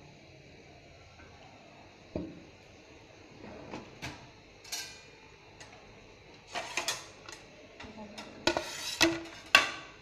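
Stainless-steel kitchenware clinking and knocking: scattered sharp strikes, a few in the first half and a cluster in the last four seconds, the loudest near the end.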